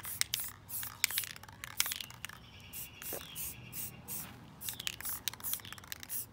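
Can of Rust-Oleum metallic spray paint being shaken, its mixing ball rattling in a quick scatter of clicks, with a faint spray hiss in the middle.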